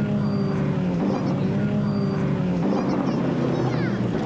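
Off-road race vehicle's engine running steadily at low revs, its pitch wavering slightly.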